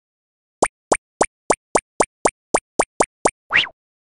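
Cartoon sound effects for an animated intro: eleven quick plops at about four a second, each a short upward pop, followed near the end by one longer rising swoop.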